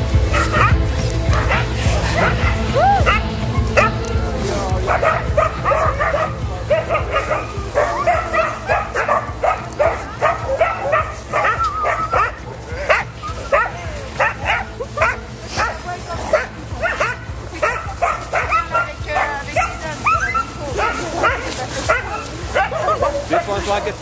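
A yard of sled dogs barking, yipping and whining all at once, many short calls overlapping without pause. A low steady hum sits under the first few seconds and then fades.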